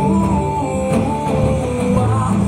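Loud music playing, a song with held melody notes that change pitch every fraction of a second, accompanying a dance.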